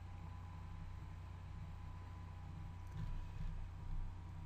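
Faint room tone: a steady low electrical hum with a faint high steady whine, and a slight low rumble about three seconds in.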